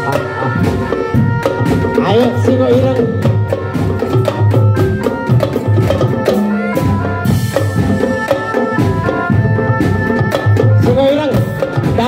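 Traditional East Javanese folk music playing loudly and steadily, with drums and percussion under a bending melody line.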